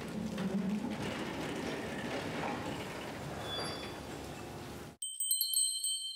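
Steady noise of a building demolition, machinery and breaking debris, for about five seconds; then it cuts off sharply and a bright chime rings, several high tones held together.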